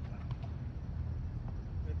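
A few faint taps of a roundnet ball being hit during a rally, over a steady low rumble.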